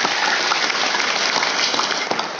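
Audience applause: a dense patter of clapping that starts suddenly.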